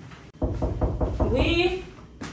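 Knocking on a wooden door: a quick run of raps starting about half a second in, with a voice calling out over the knocks.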